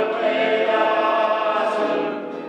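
Choral singing: several voices holding long, steady notes together.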